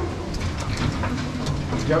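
Scattered metal clanks and rattles from a mine shaft cage's mesh gates and floor as people step out of it, with voices murmuring underneath.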